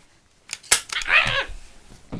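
A few sharp clicks and knocks, then a brief pitched vocal noise from a child, a short cry or a mouthed sound effect.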